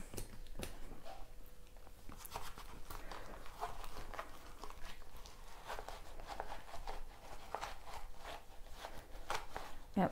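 Faint, irregular scratching and rustling as acetone-dampened cotton is rubbed over a wallet's peeling interior lining and the wallet is handled with gloved hands.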